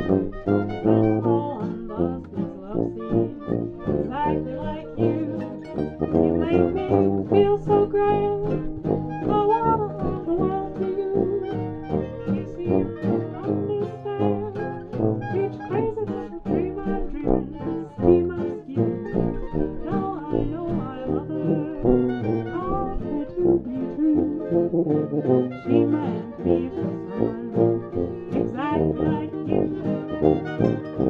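A small acoustic jazz band of fiddle, acoustic guitar, mandolin and sousaphone playing a swing tune, with a sliding melody line on top and a steady beat underneath.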